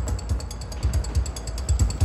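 Rapid, even mechanical clicking like a ratchet, over a low uneven rumble.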